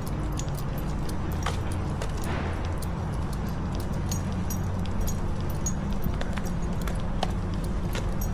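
Street ambience while walking a city sidewalk: a steady low rumble of traffic and passing cars, with frequent light clicks and jingles throughout and a brief hiss about two seconds in.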